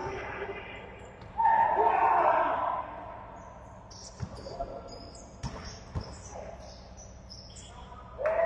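Basketball in play in a sports hall: the ball thumps on the court a few times and sneakers squeak on the floor through the second half. A player's voice calls out loudly about a second and a half in.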